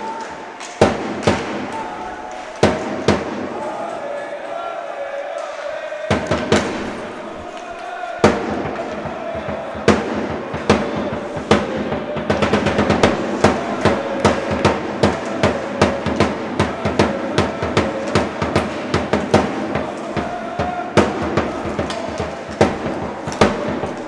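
A drum beaten in a quick steady rhythm that starts about eight seconds in, over the murmur of a crowd's voices at an ice hockey rink, with a few scattered knocks before it.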